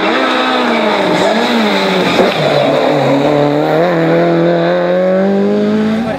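Peugeot 205 rally car's engine revving hard at speed. Its pitch wavers and falls over the first two seconds and breaks briefly about two seconds in, then climbs steadily as the car accelerates.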